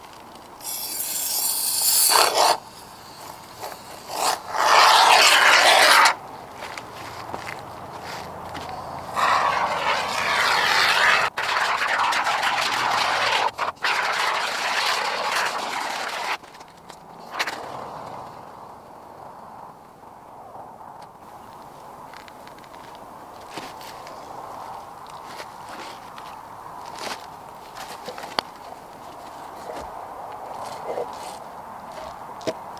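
Aerosol can of pond foam sealant hissing as expanding foam is sprayed onto rocks to set a stone platform, in three bursts, the last several seconds long and breaking off briefly twice. Quieter handling sounds follow.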